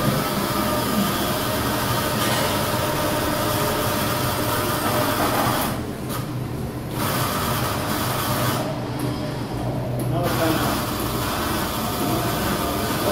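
Lely Astronaut robotic milking unit running as its arm moves in under the cow to attach the teat cups: a steady mechanical hum and hiss. The hiss drops out twice for a second or so, around six seconds in and again near nine seconds.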